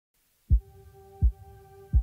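Three deep bass thumps about three-quarters of a second apart, like a slow heartbeat, over a steady held tone: a synthesized logo-sting sound effect.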